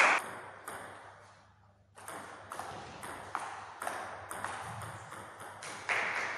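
Table tennis ball clicking off paddles and the table, echoing in a large gym hall: one sharp, loud hit at the start, then from about two seconds in a string of lighter clicks roughly every half second.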